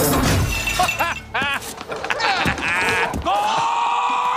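A short crash of breaking crockery at the start, followed by bursts of a man's laughter and a long steady held tone near the end.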